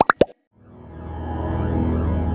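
Logo-animation sound effects: a few quick cartoon plops right at the start, then a sustained synthesized chord with a low drone that swells in from about half a second in.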